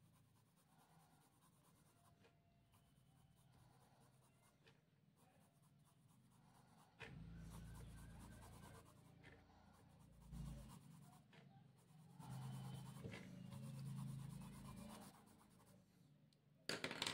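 Soft 4B graphite pencil hatching on drawing paper: faint scratching strokes, starting about seven seconds in and going on until shortly before the end.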